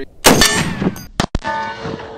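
A single .50 BMG rifle shot from a Serbu BFG-50 firing an armor-piercing incendiary round, very loud and sudden. About a second later comes a clang of the round striking a sloped steel armor plate, which rings on in several steady tones.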